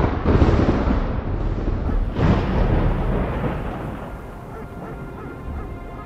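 A loud rumbling sound effect swells in at the start and surges again about two seconds in, then fades as held music notes come in underneath.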